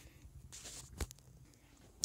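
Faint handling noises, with a single sharp click about a second in.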